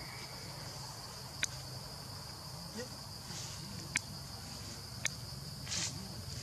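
Steady high-pitched insect chorus, crickets or cicadas, with three sharp clicks about a second and a half, four and five seconds in, and a short rustle near the end.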